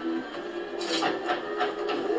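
Sci-fi series soundtrack playing on a screen: a few short mechanical whirs and clicks from a handheld tool turning the bolt of a round metal lock, over held notes of the score.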